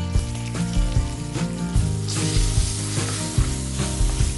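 Spices, red chillies and a curry leaf sizzling as they fry in hot oil in a black cooking pot, stirred with a slotted metal spatula. The sizzle grows louder about two seconds in, as chopped green vegetables go into the oil.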